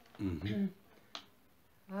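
A woman's voice briefly, then a single sharp click a little over a second in, over quiet room tone.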